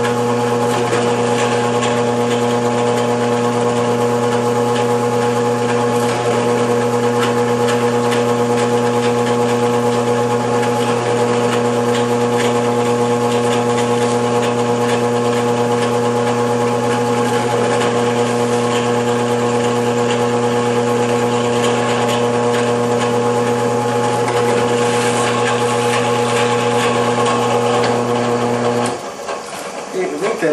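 Drill press motor running with a steady hum while it drills small holes with a 1/16-inch bit through a paper pattern into wood. The motor is switched off about a second before the end.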